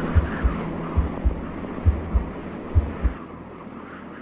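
Deep double thumps in a heartbeat rhythm, about one pair a second, over a low drone: a heartbeat sound effect in an intro soundtrack. The thumps stop about three seconds in and the drone fades.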